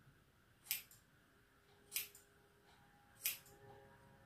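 Three crisp snips of scissors cutting through a lock of long hair, spaced about a second and a quarter apart.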